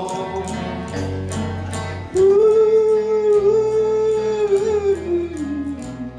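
Live country band playing, with electric guitar and bass under a singer. About two seconds in, a long held note comes in over the band and fades just before the end.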